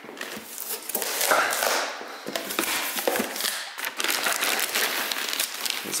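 Clear plastic packaging bag crinkling and rustling as it is handled around a set of exhaust headers in a cardboard box, with small irregular crackles and knocks.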